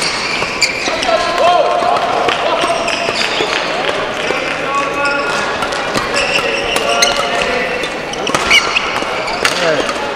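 Badminton doubles rally in a large sports hall: sharp racket strikes on the shuttlecock and shoes squeaking on the court floor, over a background of voices.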